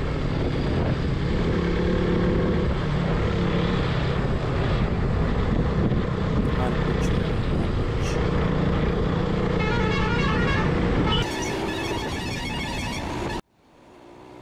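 KTM RC200's single-cylinder engine running steadily under way, with road noise. About ten seconds in, a vehicle horn honks in a repeating pattern. The sound cuts off suddenly near the end.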